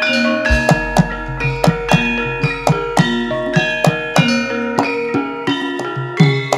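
Live Javanese gamelan music: bronze metallophones ringing out a fast run of struck notes over sharp hand-drum strokes. A large gong is struck about half a second in, and its deep hum fades over about five seconds.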